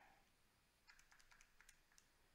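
Faint keyboard taps, about half a dozen in quick succession in the second half, as a number is keyed into a calculator.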